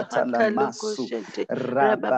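Speech: a voice praying aloud in tongues in a rapid, unbroken run of syllables.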